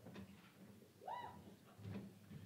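Faint room murmur, and about a second in one brief high-pitched call that rises quickly and then holds.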